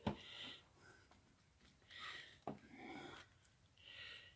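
Near silence, with faint soft breaths and two light clicks, one at the start and one about halfway through.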